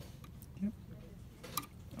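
A few light metallic clicks as a key is fitted and settled into the clamp jaw of a key-cutting machine, the sharpest about one and a half seconds in.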